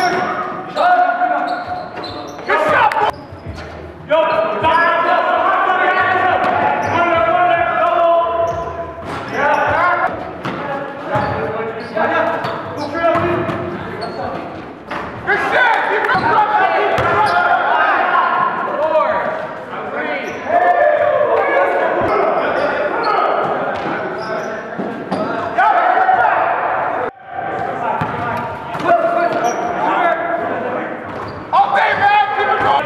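A basketball bouncing on a gym floor during play, with voices in the background, in a large echoing hall.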